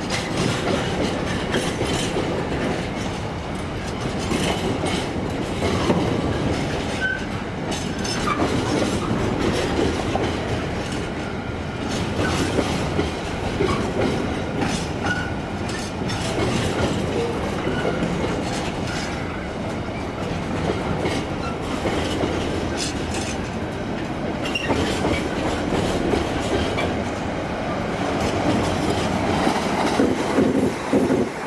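Container flat wagons of a freight train rolling past: a steady running noise of steel wheels on the rails, with a continual run of clicks as the wheelsets pass and a few faint brief squeals. It gets a little louder near the end.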